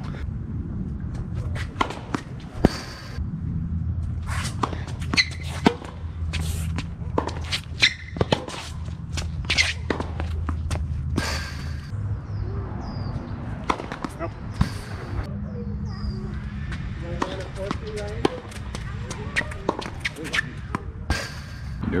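Tennis rallies on a hard court: sharp pops of strung rackets striking the ball and of the ball bouncing, coming at irregular intervals throughout, over a steady low hum.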